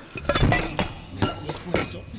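Teacups, saucers and a teapot clinking against each other as they are handled on a table: about five sharp clinks with a short ring, the loudest about half a second in.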